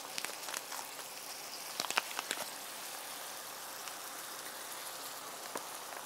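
A skillet of browned ground beef with rice, beans, corn and diced tomatoes sizzling steadily on the stove, with a few light clicks in the first couple of seconds.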